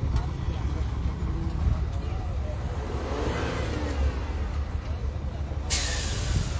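Vehicle engines idling as a steady low rumble, with indistinct voices in the background. Just before the end a sudden loud hiss sets in.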